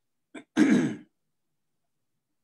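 A person clearing their throat once, a short rasp lasting about half a second, just after a fainter brief sound.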